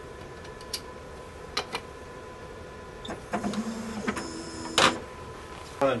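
BioTek Synergy HT plate reader: a couple of light clicks as a 96-well plate sits in the plate carrier, then the carrier's drive motor whirs steadily for about a second, ending in a loud click as the carrier stops.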